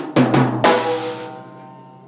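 Drum kit playing the end of a reggae drum fill: a few quick snare and tom hits in the first moments, closing on a crash with the bass drum that rings out and fades.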